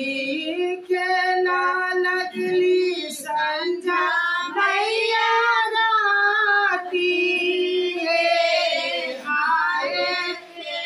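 Women singing a traditional Maithili kobar wedding song together, unaccompanied, in long held, sliding notes.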